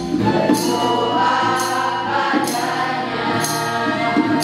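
Mixed teenage choir singing a song in unison over a strummed acoustic guitar, with a short high rattling percussion stroke about once a second.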